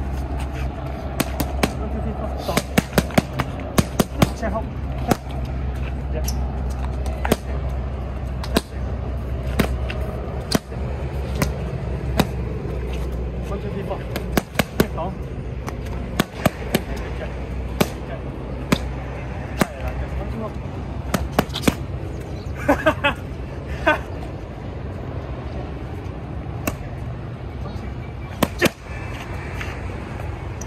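Boxing gloves punching handheld punch paddles: sharp smacks at irregular intervals, often in quick combinations of two or three, over a steady low rumble.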